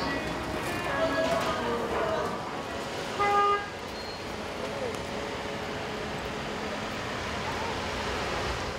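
Street traffic noise with voices, and one short car horn toot about three seconds in, the loudest sound.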